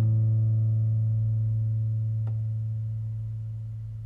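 Andrea Tacchi classical guitar's final chord ringing on and slowly dying away, its low bass note lasting longest. A faint click about two seconds in.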